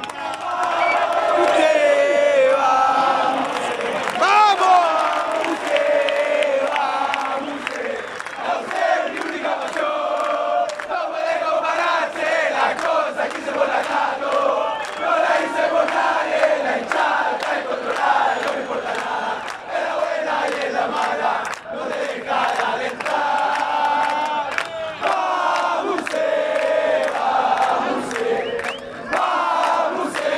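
Football supporters in the stands singing a chant together, a large crowd of voices singing without pause, loud and close to the microphone.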